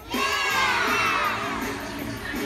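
A group of young children shouting together, many high voices sliding down in pitch, loud for about a second and a half before easing off.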